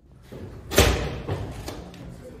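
A loud thud about three-quarters of a second in, followed by echo and a few lighter knocks: a glass hallway door with a push bar being shoved open.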